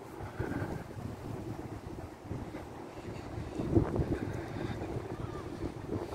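Outdoor city ambience: a steady low rumble of distant road traffic, with wind buffeting the microphone.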